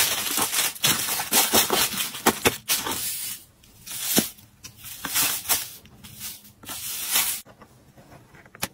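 Tissue paper rustling and crinkling in quick bursts as it is folded and tucked into a box, then shredded paper filler rustling more sparsely as it is pressed in by hand. The rustling stops suddenly shortly before the end.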